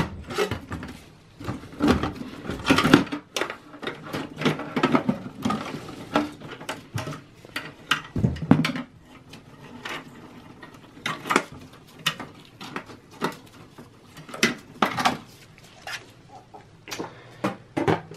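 A 300-watt desktop power supply being slid out of a steel PC case and lifted out with its cables: irregular clicks, knocks and scrapes of metal on metal, with cables rustling against the case.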